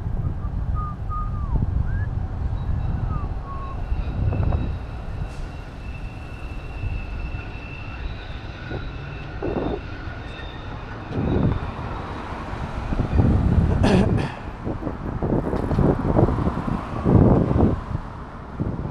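Road traffic going by, with wind rumbling on the microphone and several louder swells in the second half. A faint thin high whine sounds for several seconds in the middle, and a few short chirps come in the first few seconds.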